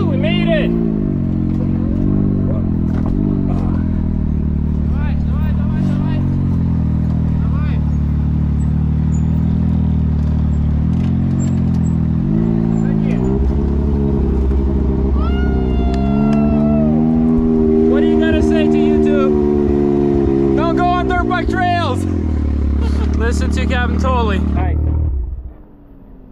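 Side-by-side UTV engine running at low speed as the vehicle crawls over a rough trail, its pitch rising and falling with the throttle several times. It drops away about a second before the end.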